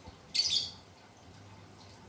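A single short, high-pitched chirp about half a second in, over a faint steady low hum.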